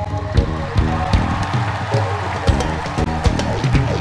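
Live rock band playing an instrumental passage: a drum kit keeps a steady beat under held, pitched instrument notes that change in steps.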